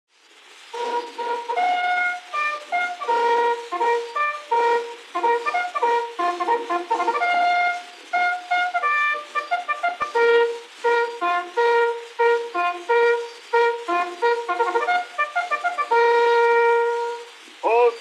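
A brass bugle call of many short notes, ending on one long held note near the end. It comes off an acoustic-era 78 rpm shellac record, so it sounds thin with no bass, under a faint surface hiss, with a single click about halfway through.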